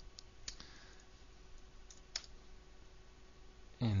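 A few separate clicks of computer keys, in two pairs about a second and a half apart, over a quiet background with a faint steady hum.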